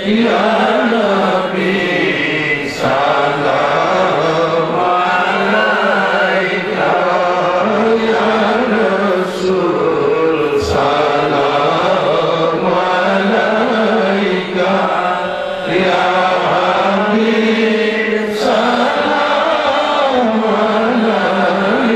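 A crowd of men chanting together in unison through a public-address system. It is a loud, continuous group chant of many voices, with a few brief dips.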